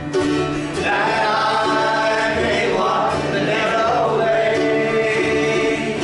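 Congregation singing a worship song together, led by acoustic guitar; long held sung notes that change every second or two.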